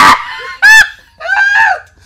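High-pitched, honking laughter: three loud shrieking whoops, the last the longest, in a fit of hard laughing.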